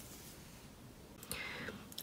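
Quiet room tone for just over a second, then a faint click and a short soft hiss of about half a second: a breath drawn in just before speaking.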